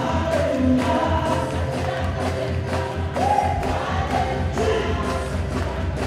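Music with a choir singing over a steady, strong bass line.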